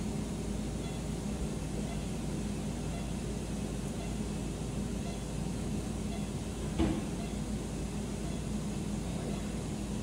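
Steady low machine hum of operating-room equipment and ventilation, with one short louder sound about seven seconds in.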